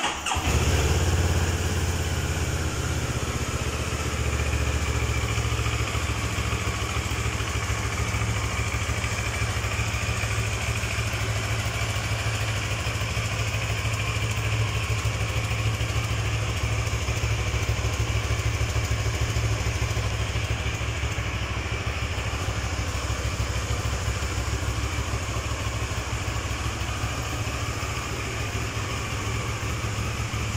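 CFMOTO NK650's 649 cc parallel-twin engine starting and then idling steadily.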